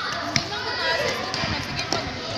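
A futsal ball struck on a concrete court: one sharp thud about a third of a second in, with a few lighter touches, over background voices.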